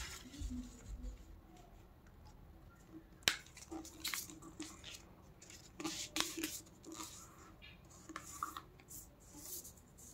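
Sheet of paper being folded in half by hand and the crease pressed flat on a clipboard pad: faint, scattered rustles and crackles, with one sharper click about three seconds in.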